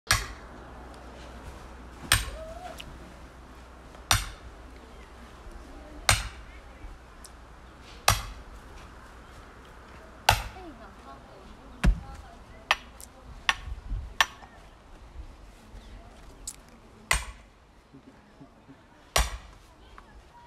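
Sledgehammer striking a steel splitting wedge set in a log, driving it in to split the wood: sharp metal-on-metal strikes about every two seconds, then quicker, lighter hits in the second half.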